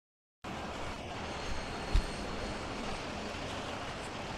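The sound cuts in abruptly about half a second in: diesel goods trucks running and pulling past close by, a steady engine rumble. A single sharp low thump comes about two seconds in.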